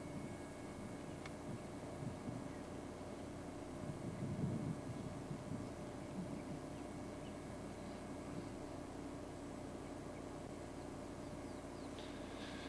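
Quiet outdoor bush ambience over a steady low hum, with a slight swell about four seconds in and a few faint bird chirps.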